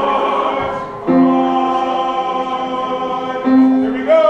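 Large mixed community choir singing held chords, with a brief break about a second in before a new chord, and another change near the end.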